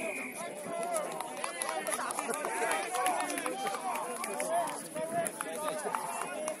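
Rugby players shouting and calling to each other during play, voices too distant to make out words, with short knocks and thuds among them.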